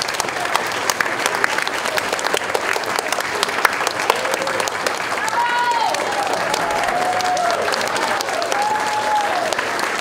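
Audience applauding steadily, with voices calling out over the clapping from about halfway through.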